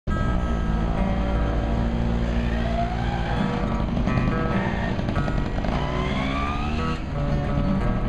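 Acoustic guitar playing, with a motor vehicle going by. The vehicle's engine pitch rises twice as it accelerates, over a low rumble.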